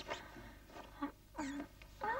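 A woman's short, muffled whimpering cries: a breathy gasp right at the start, then two brief pitched whimpers about a second in and half a second later.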